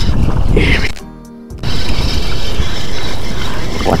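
Wind buffeting the microphone in a loud, rumbling rush, under background music; the rush drops away for about half a second about a second in.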